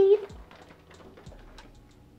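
A woman's voice trails off at the very start, then faint irregular clicks and ticks: a small parrot cracking and working a seed in its beak.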